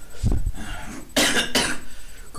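A man exhales smoke after a bong hit, the breath puffing on the microphone, then coughs twice from the smoke.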